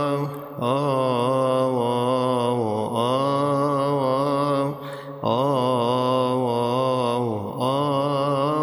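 A man chanting a Coptic tamjid (doxology) solo in long, melismatic held notes. He pauses briefly for breath about every two to three seconds.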